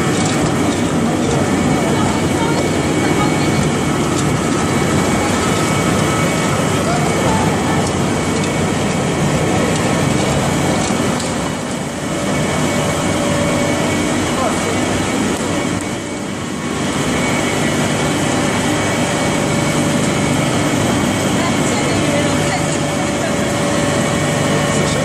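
Vertical pellet mill making rice husk pellets, a loud steady machine noise with a few steady humming tones from its motors. The level dips briefly twice, about twelve and sixteen seconds in.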